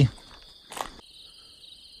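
A faint, steady, high-pitched chorus of night insects, likely crickets, with a brief rustle a little under a second in.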